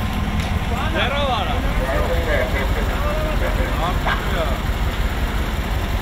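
Crane truck's engine running steadily with a low rumble while a hydraulic crane lifts a metal kiosk, with men's voices calling out several times over it.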